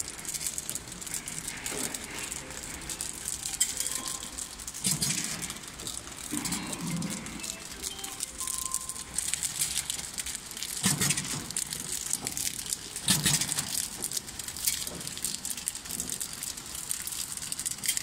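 CB-680XWS flow-wrapping packing machine running, a steady mechanical rattle and clatter that swells louder a few times.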